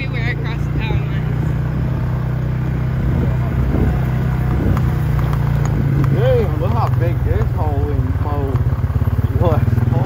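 Engine of a Polaris off-road vehicle running steadily as it drives along a rough dirt track, with voices talking over it in the second half.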